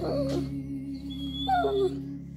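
Basset hound whining while begging for food: a falling cry right at the start and another drawn-out one sliding down in pitch about a second and a half in. Background music with steady held notes underneath.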